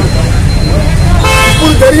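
A vehicle horn sounds once, a steady single-pitched honk starting a little after a second in and lasting just over half a second, over street and crowd noise.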